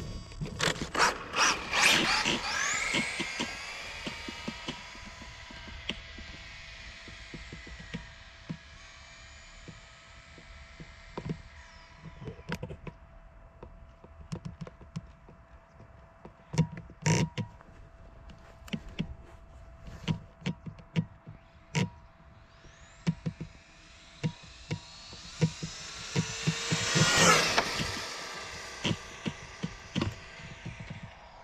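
Radio-controlled Tamiya TT02 electric touring car at full throttle: a high motor-and-gear whine rising in pitch as it speeds away, fading over several seconds. Near the end the whine swells again and the car passes close at speed, its pitch dropping as it goes by. Scattered sharp clicks throughout.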